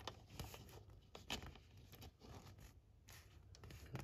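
Near silence, broken by a few faint, short clicks and scrapes of small hobby tools and a paper flag being handled.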